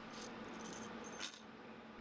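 Faint clinking of iron square cut nails as they are picked up and laid down on a wooden workbench.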